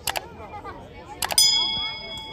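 Subscribe-button animation sound effect: mouse clicks at the start, then two more clicks about a second later, followed by a bell ding that rings on for nearly a second as several steady tones.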